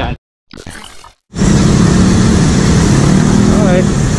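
Motorcycle riding in traffic: steady engine hum and road noise picked up by the rider's onboard camera. It cuts in abruptly about a second in, after a brief silence.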